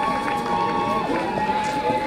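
Music with long held notes, with the voices of a crowd mixed in.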